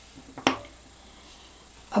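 A single short tap about half a second in, as a craft veining mold is set down on a sheet of paper on a table; otherwise only faint room hum.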